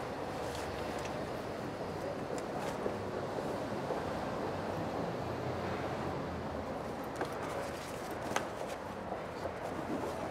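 Steady low outdoor street background noise, with faint rustling and a few small clicks from clothing and a cloth bag being handled close by.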